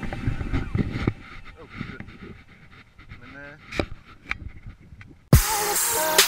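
Outdoor camera-microphone sound: low rumbling and knocks with a few clicks and a faint voice. Electronic music then starts abruptly about five seconds in.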